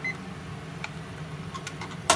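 A digital kitchen timer's alarm gives a last short beep and is switched off with a press of its button. After that there is a steady low kitchen hum and a few faint clicks of handling.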